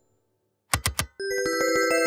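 Near silence for most of the first second, then a logo sting: three quick hits, followed by a fast, evenly pulsing run of bell-like chime tones that build up into several notes sounding together.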